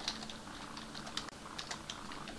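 Typing on a computer keyboard: an irregular run of light key clicks as code is entered.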